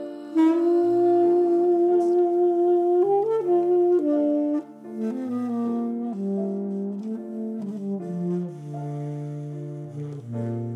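Tenor saxophone playing a jazz melody over piano accompaniment. A long held note comes in about half a second in, then a run of shorter notes that drops to a softer level about halfway through.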